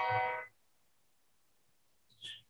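Keyboard sounding a C major chord with the added ninth (D) played together, the chord dying away about half a second in, followed by near silence.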